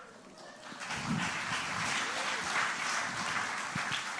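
An audience applauding with hand claps, beginning about a second in and holding steady.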